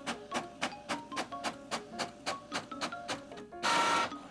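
Background music of quick, even notes, about four a second. Near the end, a short loud burst of mechanical noise from an Epson ink-tank inkjet printer as it feeds out the printed sheet.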